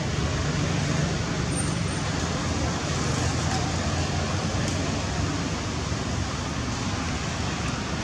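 Steady background noise with a low rumble and no distinct events.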